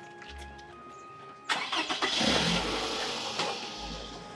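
A car engine starts with a sharp knock about a second and a half in, then runs for about two seconds before fading. Soft background music plays under it.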